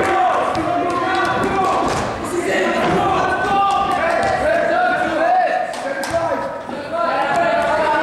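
Several overlapping voices of players and onlookers chattering and calling out in an echoing gymnasium, with scattered sharp knocks through it.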